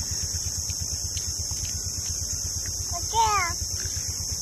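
A toddler's short, high-pitched babbling cry, falling in pitch, about three seconds in, over a steady low mechanical throb and a steady high hiss.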